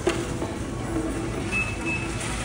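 Busy indoor restaurant din with background music playing, and a brief high beep near the end.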